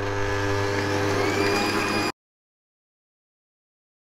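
Electric stand mixer with a wire whisk running steadily at speed, beating eggs and honey into a foam. About two seconds in, the sound cuts off abruptly into dead silence.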